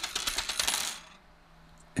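Thin metal retaining ring from a split-disc PAS magnet set down on a wooden table, clinking and jingling for about a second before it settles.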